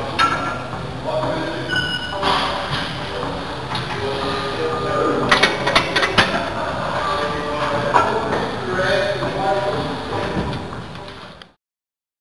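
Mixed background of voices and music, with a few sharp knocks about five to six seconds in; the sound fades out near the end.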